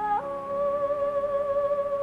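Female backing vocalists humming a wordless gospel harmony, stepping up to a new chord just after the start and holding it with vibrato.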